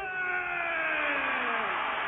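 A wrestler's long drawn-out shout into a microphone, its pitch sliding slowly down and fading out near the end, over an arena crowd cheering.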